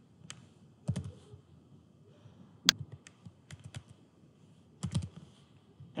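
Computer keyboard keys being pressed in a few scattered, irregular clicks with pauses between them, a few louder ones standing out.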